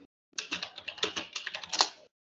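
Typing on a computer keyboard: a quick, irregular run of key clicks starting about a third of a second in.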